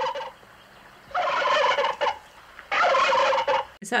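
Turkey gobbling: a gobble ending just after the start, then two more rattling gobbles about a second and a half apart.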